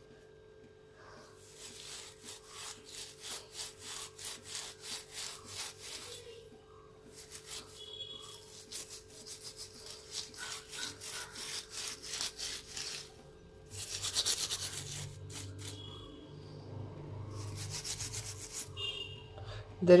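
Rhythmic scrubbing strokes, about two a second, on a gas stove burner, coming in several runs with short pauses between.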